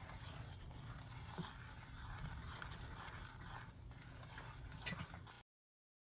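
Faint scraping and light ticks of a wooden spoon stirring a thick topping in a stainless steel saucepan, over a low steady hum. The sound cuts off abruptly near the end.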